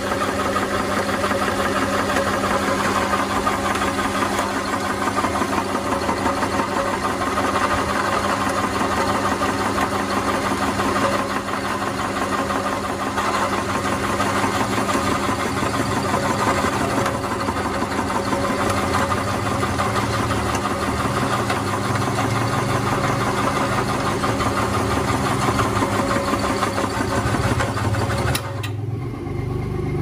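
An electric meat grinder with a No. 12 mincer head runs steadily under load, its motor humming as it extrudes moistened bran feed through a 4 mm plate into pellets. The running sound cuts off shortly before the end.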